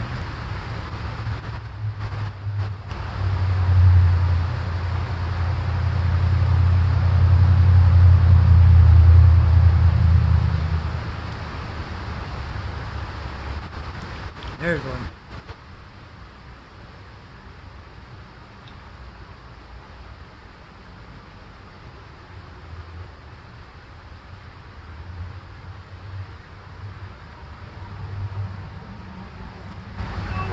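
A low rumble that builds over the first few seconds, is loudest around eight to ten seconds in, then dies away about eleven seconds in, leaving a quieter steady outdoor background.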